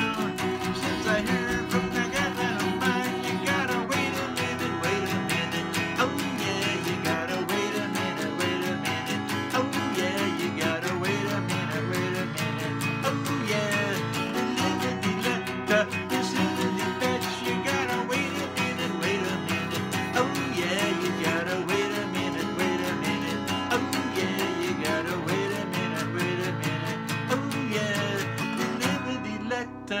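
Acoustic guitar strummed steadily in a rhythmic country-style accompaniment, an instrumental stretch between sung verses. The playing briefly drops away near the end.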